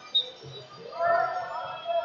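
A short high squeak about a fifth of a second in, then voices of coaches and spectators shouting from about a second in.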